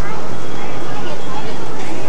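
Indistinct voices and chatter, with no clear words, over a steady background of noise.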